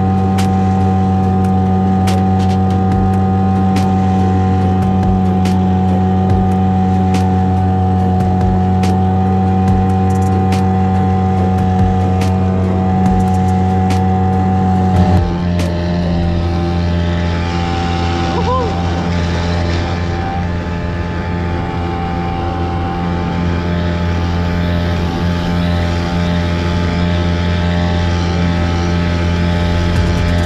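Hangkai 6 hp outboard motor on a small inflatable boat running steadily at speed, a constant engine drone with occasional sharp ticks in the first half. About halfway through the sound abruptly changes character and carries on just as steadily.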